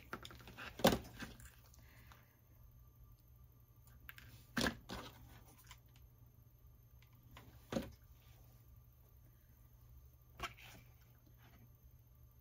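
Hot glue gun and small craft pieces handled on a tabletop: four short sharp knocks spread a few seconds apart, over a low steady room hum.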